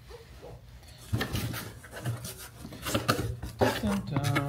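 Cardboard box being handled and opened by hand, with rustling, flap scrapes and light knocks starting about a second in.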